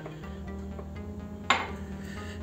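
A drinking glass of hot water set down on a stone countertop: a single sharp clink about one and a half seconds in, over a steady low hum.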